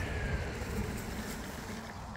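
Electric skateboard rolling to a stop: a low wheel rumble with a faint falling motor whine that fades out early on.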